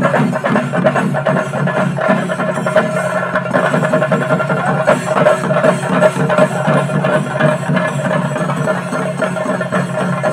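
Percussion music: drums played in a fast, continuous beat.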